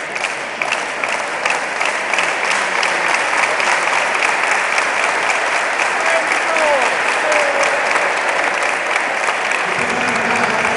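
Crowd applauding, with the clapping falling into a steady regular beat; it grows louder over the first few seconds and then holds.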